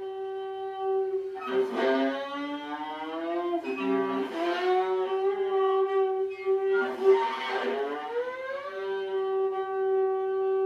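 Viola bowed in free improvisation: one long held note, rough and scratchy in three stretches where the bow pressure rises and a lower second note sounds with it.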